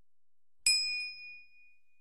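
A single bright bell ding, the sound effect for clicking a notification bell, struck once about two-thirds of a second in and ringing out as it fades over about a second and a half.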